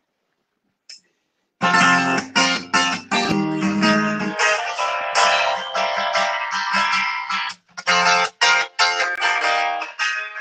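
Guitar intro to a song: after a moment of near silence and a faint click, the guitar comes in about a second and a half in, playing rhythmic strummed chords, with a brief break between chords later on.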